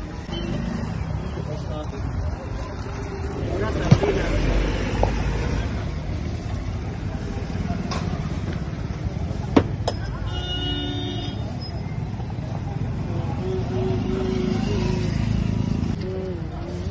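Steady street traffic noise with background voices. There are two sharp clinks, about four and nine and a half seconds in, and a brief pitched tone just after ten seconds.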